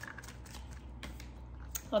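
Tarot cards being shuffled and handled: faint, scattered clicks and taps of cards against each other.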